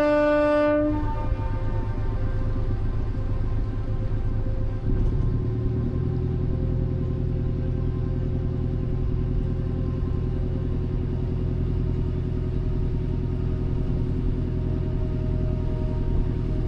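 The end of a long, loud blast on a lake passenger ship's horn, cutting off within the first second. It is followed by the ship's engine running steadily in a low rumble, its note changing about five seconds in.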